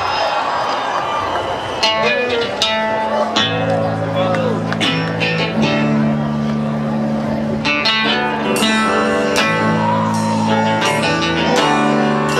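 A live band starting a song on guitar, upright bass and mandolin. Strummed guitar chords begin about two seconds in, and steady low notes join a second or so later.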